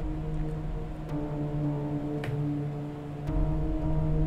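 Ambient background music of sustained droning chords over a low held note. The chord shifts about a second in and again near the end.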